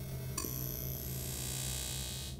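Electronic sound effects of a TV logo sting: a steady low hum, a short click with a brief ping about half a second in, then a high, thin shimmering tone held to the end.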